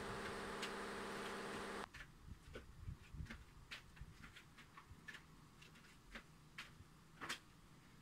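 A steady, even-pitched buzz for almost two seconds that cuts off suddenly, followed by faint scattered clicks.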